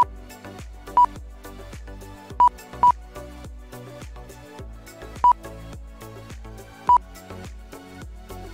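Music with a steady beat, cut through six times by short, loud, high beeps from the race's lap-timing system as the Mini-Z cars cross the timing line. The beeps come at uneven spacing, two of them close together near the middle.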